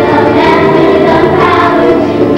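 A group of voices singing a song together over backing music, loud and continuous.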